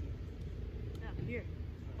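A boy's short spoken call, 'Here,' over a steady low outdoor rumble.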